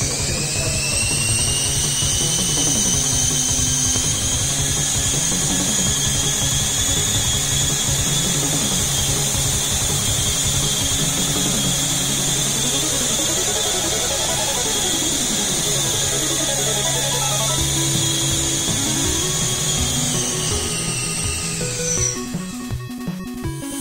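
Electric micro helicopter's motor and rotor whining at a steady high pitch while hovering. The whine rises in pitch as it spins up at the start and falls away as it winds down near the end, with electronic background music underneath.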